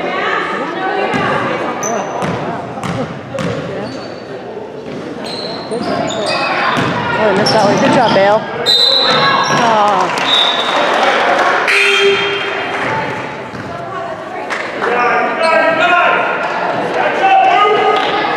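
Basketball bouncing on a hardwood gym floor during live play, with sneaker squeaks and spectators' voices and shouts echoing in the large gym. The crowd gets louder from about six seconds in.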